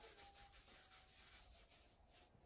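Faint rubbing of a makeup-removing pad against the face, in quick, soft repeated strokes.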